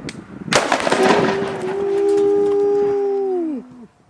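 A large homemade bundle of firecrackers landing on asphalt and going off: one sharp bang about half a second in, then a rapid, dense string of crackling pops for about three seconds as the rest of the bundle explodes. A long held note sounds over the crackling and dips away near the end.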